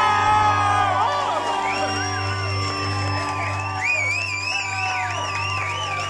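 Live rock band with electric guitars and electric bass holding the final chord of the song, a low bass note and steady guitar tones sustained, with a high wavering note riding over the top from about two seconds in.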